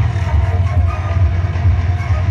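Music with a loud, steady bass.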